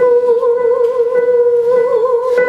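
A woman's voice holding one long sung note with a wavering vibrato, unaccompanied, close to the microphone.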